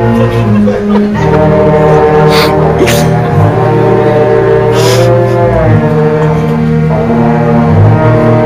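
Beginner concert band playing a slow, simple march, low brass and other winds holding long notes together and changing chords in steps. Three short bright crashes sound in the middle.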